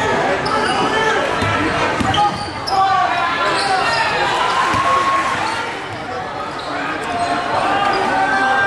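Live basketball game sound in a gymnasium: the ball bouncing on the hardwood court and sneakers squeaking, under the steady voices and shouts of the players and the crowd.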